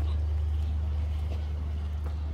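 Steady low mechanical hum that holds unchanged throughout, with faint background noise above it.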